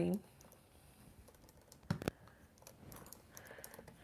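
Two quick, light clicks about two seconds in, then faint handling noises: a plastic acrylic paint tube being put down on the worktable.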